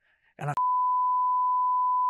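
Censor bleep: a steady 1 kHz beep tone cuts in about half a second in, right after a brief spoken word, and holds.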